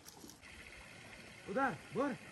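Two short calls in a person's voice near the end, each rising and then falling in pitch, over a steady high hiss.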